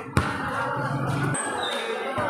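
A basketball bouncing once on a concrete court, a single sharp thud just after the start, over the chatter of a crowd standing around.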